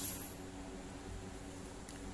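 A low, steady hum with faint background noise, and one faint click near the end.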